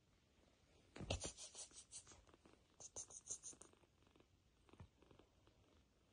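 Soft scratching and rustling on fabric in two short flurries, about a second in and again about three seconds in, with a few faint ticks between. The quiet is otherwise unbroken.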